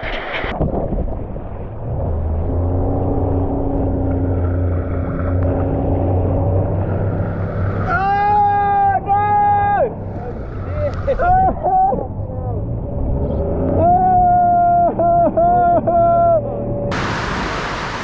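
Motorboat engine running steadily at a low pitch, with voices calling out in long held notes over it in the middle and later part. Near the end the engine gives way to a sudden loud rush of water and wind noise.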